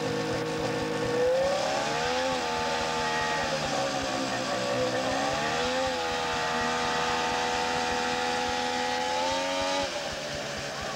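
Snowmobile engine running at a steady pitch, then revving up a little over a second in as the sled pulls away. Its pitch rises and falls twice, then holds high before dropping briefly near the end.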